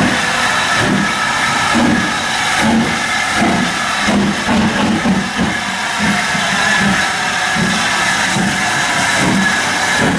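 LMS Stanier Black Five steam locomotive no. 44806 pulling slowly away from a standstill. Its exhaust chuffs come about every two-thirds of a second over a steady hiss of steam escaping around the cylinders.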